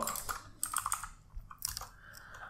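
Typing on a computer keyboard: a few quiet key taps, spaced unevenly.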